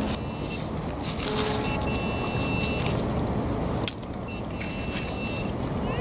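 Trowel digging and scraping in wet shingle, with sharp clicks of metal on stones, while a metal-detector pinpointer sounds a steady high tone twice as it finds a buried target, which turns out to be a bottle top. A steady noise of city traffic runs underneath.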